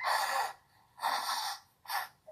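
A person breathing out hard: two long, breathy exhales of about half a second each, and a short third one near the end.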